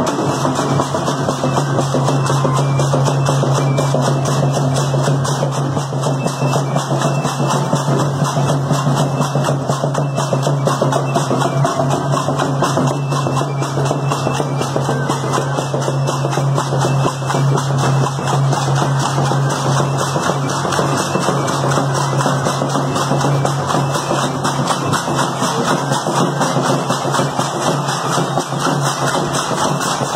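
Street dance music: a steady drum beat with dense, fast rattling over a held low tone, playing without a break.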